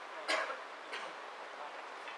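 Two sharp clicks over a steady hall background: a loud one just after the start with a short ringing tail, and a fainter one about a second in.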